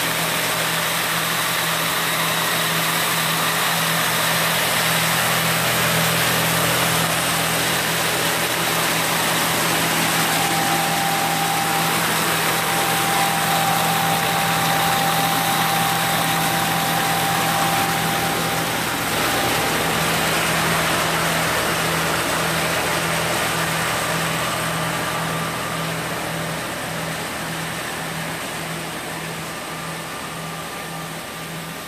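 Hasatsan H2050 vacuum hazelnut harvester running steadily while it harvests through three suction hoses: a constant machine hum under a rushing of air, with a thin whistle in the middle stretch. It grows fainter over the last few seconds.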